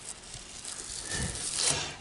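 Rustling and scraping of a fabric tie-down strap being pulled and worked through its buckle by hand. It grows a little louder in the middle and eases near the end.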